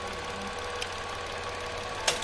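Mitsubishi Mirage G4's three-cylinder MIVEC engine idling steadily with the air-con on, now running okay after a cylinder 3 injector misfire was repaired.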